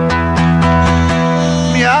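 Acoustic guitar strumming chords in a steady rhythm over sustained chord tones, a man's singing voice coming back in near the end.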